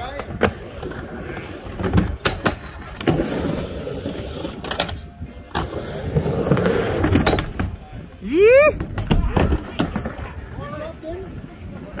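Skateboard wheels rolling back and forth on a wooden mini ramp, with repeated knocks and clacks of the board on the ramp surface and coping. A short rising whoop from an onlooker comes about eight seconds in.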